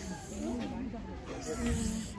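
Faint, indistinct voices of people talking in the background, over a low rumble.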